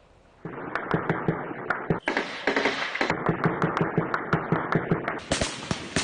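Rapid gunfire in bursts, several sharp shots a second over a dense crackle, starting about half a second in and louder around two seconds in and near the end.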